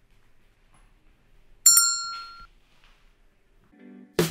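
A single bright metallic ding, struck once a little under halfway through and ringing out with several clear high tones that fade in under a second, against near-silent room tone.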